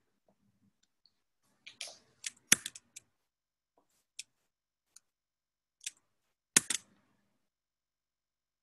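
Irregular sharp clicks and taps coming through a video-call microphone: a bunch of them about two to three seconds in, a few single clicks after, and the loudest pair near the end.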